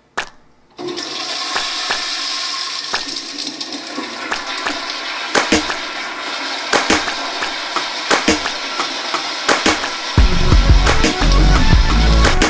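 Commercial wall-mounted flushometer toilet flushing: a sudden, loud rush of water starting about a second in and running on steadily for several seconds. Near the end, music with a heavy bass comes in.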